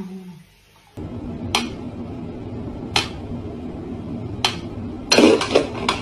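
A few sharp knocks over steady low background noise: three single knocks about a second and a half apart, then a quick flurry of them near the end.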